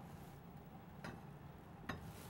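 Near quiet, with two faint clicks, about a second in and near the end, as a spatula touches the side of a small saucepan of syrup.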